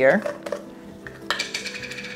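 Screw-top lid twisted off a jar of chia seeds: a click about half a second in, then a scraping rattle in the second half.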